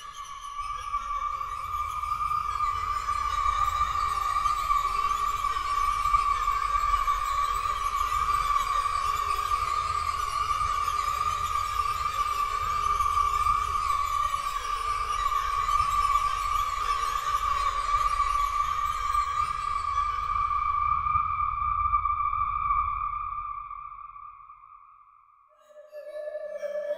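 UVI Falcon 3 'Haunted Town' ambient synthesizer preset: a single high tone held steadily over a hiss and a low rumble, fading away near the end.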